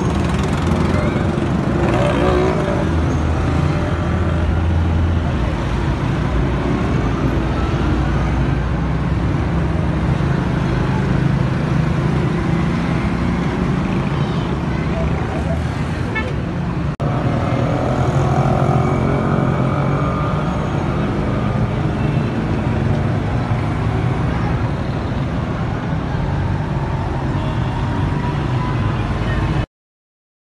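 Busy city street traffic: car, motorcycle and auto-rickshaw engines running steadily close by, with people's voices mixed in.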